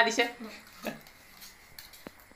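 Spoons clinking and scraping on steel plates as several people eat, with a few light clicks near the end. A voice trails off at the very start.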